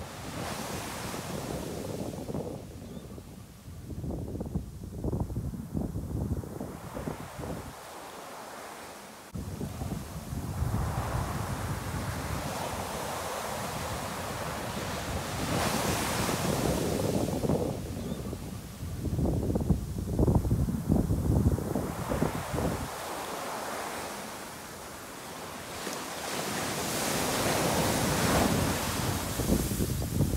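Wind rushing and buffeting over the microphone at an open car window as the car moves. The rushing noise swells and fades over several seconds, with gusty low rumbles, and jumps up abruptly about nine seconds in.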